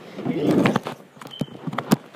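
Handling noise: a rough scuffing, then a quick series of sharp knocks, as the plastic toy car is pushed against the phone.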